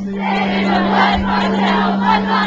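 Audience singing along together with a live acoustic guitar song, many voices blended over one steady low held note.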